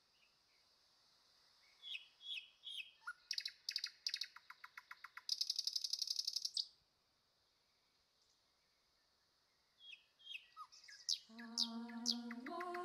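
A songbird singing two phrases of high chirps and rapid trills. The first phrase starts about two seconds in and lasts some five seconds, ending in a fast buzzy trill. The second begins near the end. In the last second a voice starts a held, chanted note.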